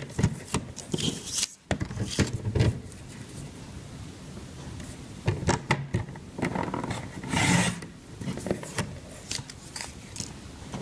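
Sliding-blade paper trimmer cutting patterned designer paper diagonally: the blade scraping along its rail through the paper, amid paper sliding and rustling as the pieces are lined up and handled. The sound comes as a series of short scraping strokes, the loudest about seven and a half seconds in.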